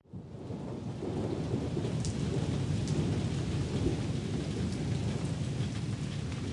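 Steady rain sound effect with a low rumble of thunder under it, fading in quickly after a sudden cut at the start.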